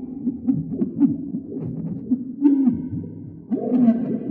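Electronic drone from a small desktop synthesizer run through a filter: low, wobbling, hooting tones that swoop up and down in pitch. It dips in level a little past three seconds, then swells louder again near the end.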